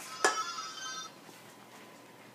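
An empty aluminium drink can clinks once on the table with a short bright ring that dies away within about a second.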